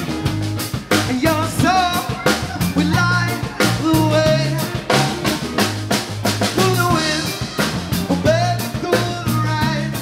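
A live rock band playing: drum kit keeping a steady beat, electric bass and electric guitar, with a melody line bending in pitch over the top.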